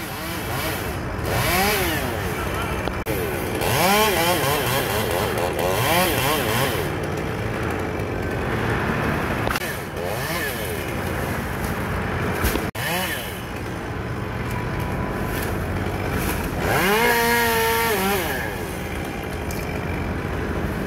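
Chainsaw running high in a tree, revved up and back down in repeated bursts as it cuts, with a brief break in the sound about two-thirds of the way through.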